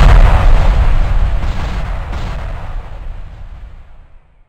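Heavy crash-and-boom sound effect of big animated block letters slamming down, a deep rumble with crackle that dies away slowly over about four seconds.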